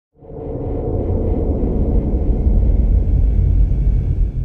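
A loud, deep rumble that fades in quickly just after the start and then holds steady.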